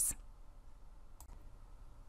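Quiet room tone in a pause between narrated sentences, a low steady hiss, with two faint clicks in quick succession a little over a second in.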